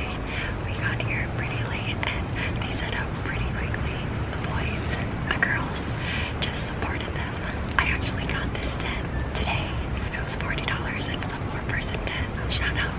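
A man speaking in a whisper, quiet hushed talk without a voiced tone, over a low steady background hum.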